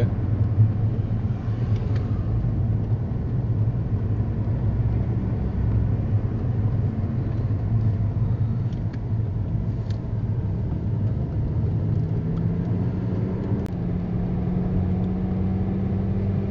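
Inside a moving car's cabin: steady road and engine rumble while cruising on the highway. About three-quarters of the way through, the hum of the 3.2-litre engine rises slightly in pitch and then holds steady.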